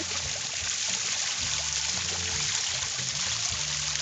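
Water splashing and trickling steadily into a small backyard garden pond from a little waterfall. Faint music with a low bass line sounds in the background.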